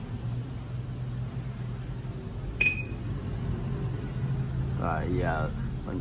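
A steady low hum runs under everything, with one sharp click and a brief high ring about two and a half seconds in. A man's voice starts briefly near the end.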